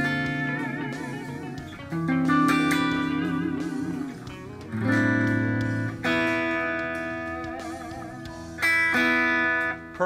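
Strat-style ESP electric guitar playing ringing chords, struck five times, each left to sustain and fade. Several are bent with a wavering vibrato from the tremolo arm and stay in perfect tune, the nut slots freshly lubricated.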